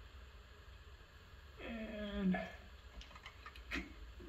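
A few light metallic clicks late on as pliers work a drum-brake shoe hold-down spring and retainer into place on the backing plate of a 1979 VW Super Beetle.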